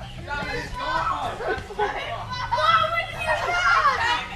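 Young players' voices calling out and chattering over one another, several at once.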